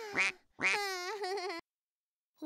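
A high-pitched cartoon-style voice: a short rising call, then a longer wavering one that cuts off sharply about a second and a half in.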